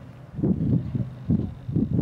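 Wind buffeting the microphone: a low rumble that comes in uneven gusts from about half a second in.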